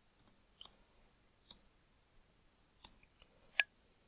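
Computer keyboard keys being pressed: about six short, sharp clicks at irregular spacing as entries are typed and confirmed.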